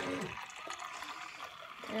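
Small pump in a push-button drink dispenser humming steadily as it pours pop into a plastic cup, cutting off about a quarter second in. Then the drink trickles faintly into the cup.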